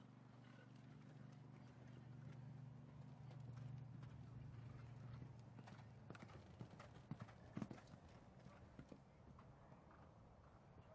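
Faint hoofbeats of a pony cantering on arena footing, growing louder as it passes close, with the strongest beats about seven to eight seconds in. A faint low hum runs underneath in the first half.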